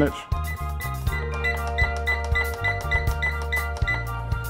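Background music with a steady beat, bass line and short repeated notes.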